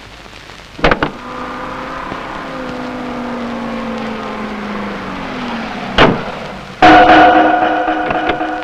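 A car door clicks open, a low hum slides slowly down in pitch, and the door slams shut about six seconds in. A loud sustained music chord strikes up near the end.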